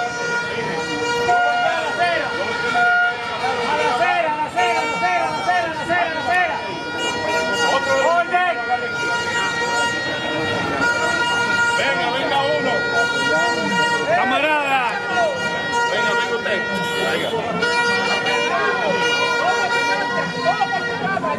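Crowd of marchers, many voices talking and shouting over one another, with a steady high tone held throughout and a few short toots in the first three seconds.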